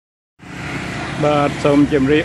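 A voice speaking Khmer over a steady background of motorbike traffic on the road; the audio cuts in from silence about half a second in, and the speech starts about a second later.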